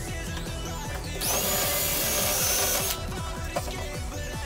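DeWalt drill with an eighth-inch bit running once for about two seconds, from a second in, boring through the plastic of a mower's discharge chute; its whine rises as it spins up and then holds. Background music with a steady beat plays throughout.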